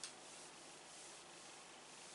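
Marker pen drawing on a whiteboard, very faint: one brief stroke right at the start, then a quiet steady hiss.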